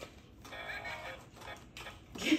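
Faint music in the background, with no speech.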